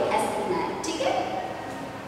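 Only speech: a woman talking, growing quieter toward the end.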